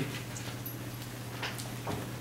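Dry-erase marker writing on a whiteboard: a few faint, short scratchy strokes over a steady low room hum.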